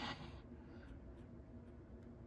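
Pencil sketching on sketchbook paper: faint, light scratching strokes. A short hiss fades out in the first half second.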